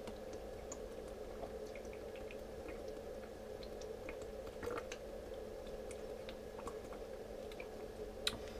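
A man gulping water from a tipped-up glass bottle: soft swallowing sounds and small mouth clicks over a steady low room hum.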